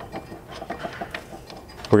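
Faint, scattered light clicks and taps from a steel slider mounting bracket being handled and held against a vehicle's pinch seam.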